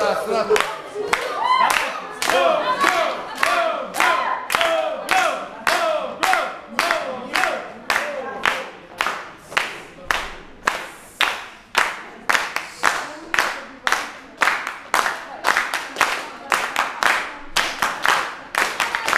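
A crowd clapping in unison, a steady beat of about two claps a second, with crowd voices over it in the first few seconds.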